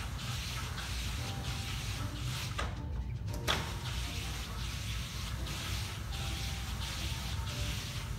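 A Graber dual-layer zebra roller shade being raised all the way by hand, its operating cord pulled hand over hand, giving a steady hissing rattle that swells and dips with each pull. There is a short pause about three seconds in, ending in a click.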